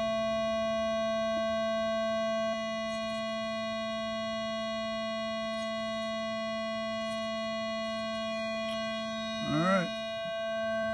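A steady electronic whine made of several constant pitches, dropping slightly in level about two and a half seconds in. Just before the end, a short voice sound sliding up and down in pitch.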